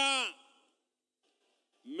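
A man speaking through a public-address system. A word ends on a falling pitch and fades out in the echo. After about a second of near silence he starts speaking again near the end.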